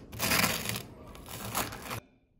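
A table knife scraping butter across a slice of crisp seeded toast, in two long spreading strokes.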